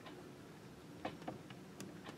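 A few light clicks of a pointed steel setting tool against the metal of a pavé-set ring as stones are set, the clearest two about a second in, over a faint steady hum.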